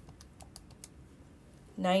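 A quick run of light, sharp key clicks in the first second, calculator keys being pressed to add two numbers; a woman's voice begins right at the end.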